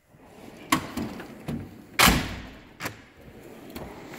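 Steel tool chest drawers sliding on their runners and knocking, with a loud clunk about two seconds in as a drawer shuts.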